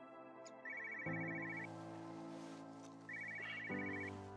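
A phone ringing: two bursts of a rapid trilling ringtone about two and a half seconds apart, over soft background music.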